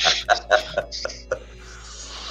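Laughter from several people over a video call, with quiet background music, followed by a soft steady hiss.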